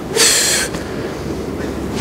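A man's short hissing breath sound made with the mouth, lasting about half a second near the start, followed by low room noise.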